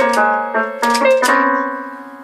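Small electronic toy keyboard played by two Jack Russell terriers pawing at its keys: several clusters of notes struck at once in quick, uneven succession, the last cluster held and slowly fading.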